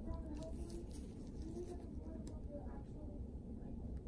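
Faint, indistinct voices over a low steady hum, with a couple of faint clicks.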